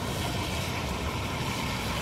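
Liquid nitrogen boiling off with a steady hiss as it is poured through a funnel into a plastic bottle, over a low rumble.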